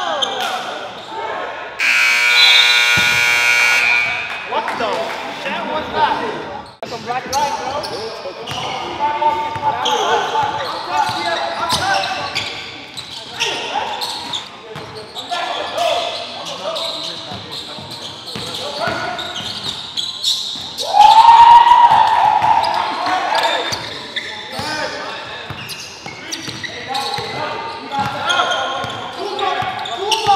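Live sound of a basketball game in a large gym: a basketball bouncing on the wooden floor and indistinct players' voices echoing through the hall. A buzzer sounds about two seconds in, and a loud shout comes about three-quarters of the way through.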